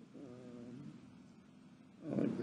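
A brief, faint pitched vocal sound lasting under a second, over a steady low background hum.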